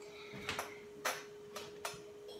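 Dry-erase marker writing on a whiteboard: four short, faint scratching strokes about half a second apart.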